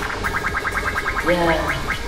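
Arcade boxing machine beeping a rapid run of short rising electronic chirps, about a dozen a second and slowing slightly near the end, as it shows the punch-power score.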